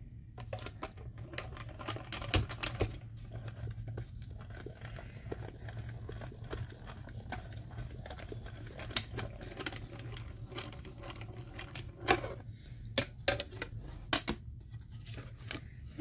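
Small hand-cranked die-cutting machine turning, its rollers pressing a metal die and acrylic cutting plates through: a run of irregular small clicks and creaks, with a few louder clicks near the end as the plates come out.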